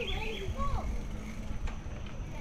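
Wind rumbling on the microphone and tyre noise of a bicycle rolling along a trail, with a quick run of high bird chirps at the start.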